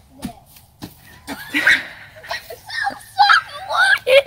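Children shouting and shrieking excitedly, with laughter, after a couple of short knocks near the start.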